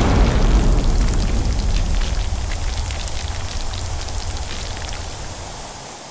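Advertisement sound effect for an elemental explosion: a deep rumble under a crackling, hissing rush of noise that fades gradually.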